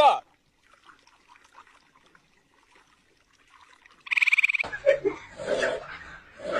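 A small frog squeaking as a finger pokes it: a short falling call right at the start, then faint scuffling. About four seconds in comes a brief high, rapidly pulsing buzz, followed by voices.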